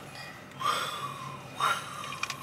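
A man yawning: a long, breathy exhale that sounds about half a second in and fades after a second, followed by a shorter breath near the end.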